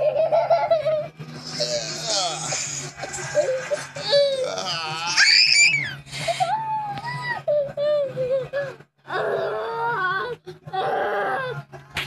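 A toddler's high-pitched squeals and cries during play-wrestling, with the very highest squeals a few seconds in.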